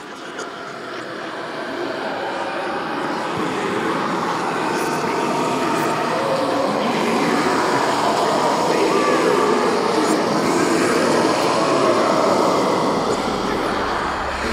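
The intro of a metal track: a dense wash of noise that swells in loudness over the first few seconds and then holds steady, with no beat.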